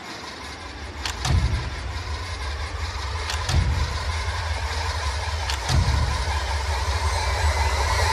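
Trailer sound design: a heavy low rumbling drone with sustained high tones building over it, struck by three heavy hits about two seconds apart.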